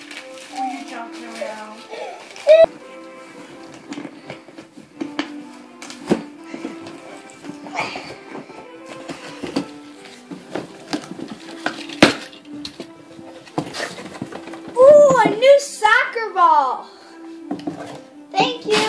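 Wrapping paper and cardboard rustling and crinkling as presents are unwrapped and a cardboard box is opened, with a few sharp knocks, over steady background music. A child's voice, the loudest part, rises briefly near the end.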